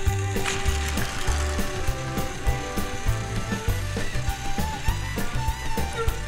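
Battery-powered Tomy TrackMaster toy trains running on plastic track, their gear motors giving a fast clicking, ratchet-like rattle. Background music with a steady beat plays throughout.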